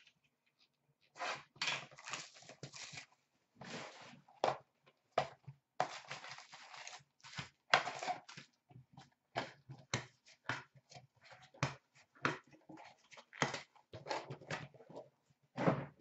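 Cardboard hockey card box being opened and its wrapped card packs handled: irregular bursts of rustling, scraping and crinkling, some short and sharp, others longer.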